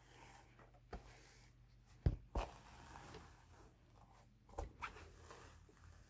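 Jacob wool being pulled across and off the wire teeth of a hand carder: a faint scratchy rustle with a few light knocks, the loudest pair about two seconds in.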